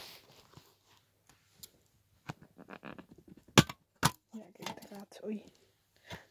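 Plastic packaging of a CD case being pulled and pried off by hand: a run of small crackles and clicks, with two sharp, loud plastic cracks in the middle, as the part gives way under the pulling.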